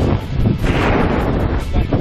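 Wind buffeting the camera microphone as a tandem parachute turns, with a louder rush about two thirds of a second in.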